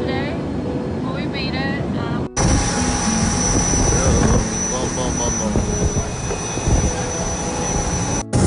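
Voices over a steady cabin hum, then, after a sudden cut about two seconds in, a business jet's engine running with a loud, even rush and a steady high whine, with voices over it.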